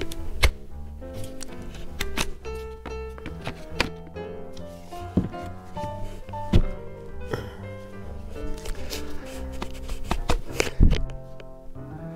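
Background music with held notes, over which a few sharp plastic knocks sound as a 20-volt battery pack is pushed against the Bauer multi-tool's battery mount. The battery will not slide on.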